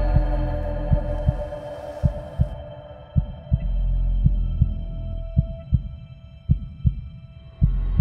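Heartbeat sound effect, low beats repeating about once or twice a second, over a held suspense drone. The upper part of the drone drops away about a third of the way in, and the drone ends shortly before the close, where a low rumble takes over.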